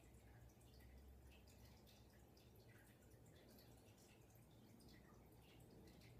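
Near silence: room tone with a steady low hum and faint scattered ticks.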